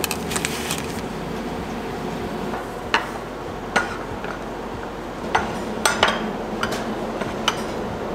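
Glass cups and ceramic saucers clinking and knocking as they are set down on a wooden tray: a scatter of light knocks, a few close together at the start, then single ones every second or so, over a steady low hum.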